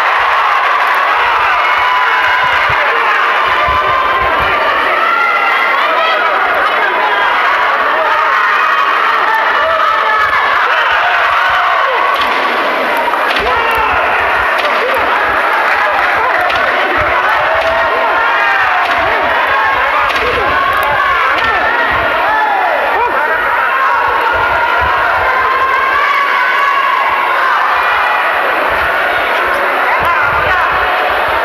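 Boxing arena crowd shouting and cheering without pause, many voices overlapping into an indistinct din, with scattered low thumps.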